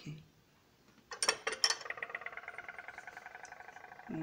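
Glazed ceramic ornaments clinking against a glazed ceramic planter as they are set inside it: a few sharp clinks about a second in, followed by a faint lingering ring.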